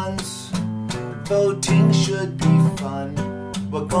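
Acoustic guitar strummed in a steady rhythm, the chords ringing on between the sung lines of a song.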